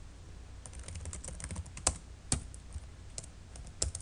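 Computer keyboard typing: a run of quick keystrokes, with a few sharper key strikes about two seconds in and near the end.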